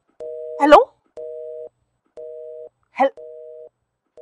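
Telephone busy signal heard from a mobile phone, a two-tone beep sounding for about half a second and pausing for half a second, four times over: the other end has hung up. Two brief, louder exclamations from a woman's voice come about a second in and near the end.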